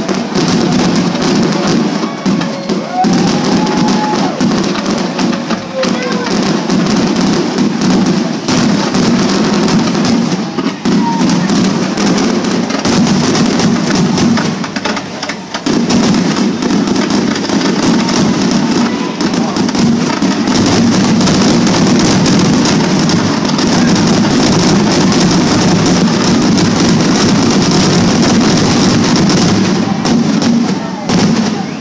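Fireworks grand-finale barrage: a dense, unbroken run of aerial shell bursts and crackles, growing steadier and louder from about halfway through.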